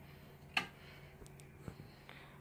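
A light switch flipped on: one short, sharp click about half a second in, then a fainter tick near the end, over quiet room tone.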